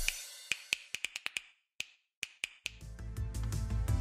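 A music sting dies away, followed by a string of short sharp clicks, like glitch effects, with a brief near-silent gap. About two-thirds of the way through, music with a steady low bass and held tones begins.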